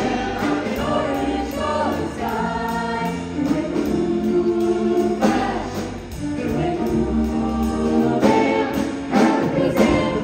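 A vocal jazz choir singing in close harmony into handheld microphones, with held chords that shift in pitch, backed by a live rhythm section with drum kit and cymbals keeping a steady beat.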